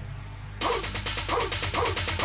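A 138 bpm mashup track playing from a white-label vinyl record on a turntable. Its high end drops out briefly at the start, then a short chopped sample repeats on each beat, about twice a second, over steady bass.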